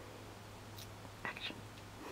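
Faint handling sounds of fingers picking at the backing of a small strip of double-sided foam tape stuck on a small magnet: a few soft ticks and scratches about halfway through. A low steady hum runs underneath.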